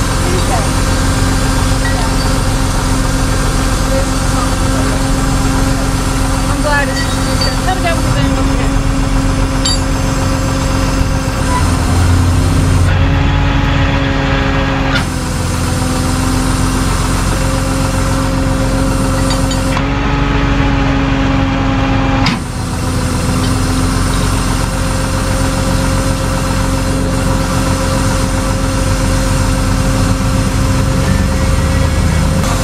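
Tow truck's engine idling steadily close by. Its note shifts briefly twice, about 13 and 20 seconds in.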